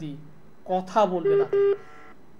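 Two short steady beeps of a telephone line tone in quick succession, heard over the studio sound as a phone-in call is put through on air. A brief spoken word comes just before them.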